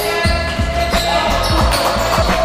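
Basketball bouncing on an indoor court floor during play, a series of low thuds several times a second, echoing in a large sports hall.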